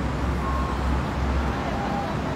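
Road traffic: a steady low rumble with no single vehicle standing out.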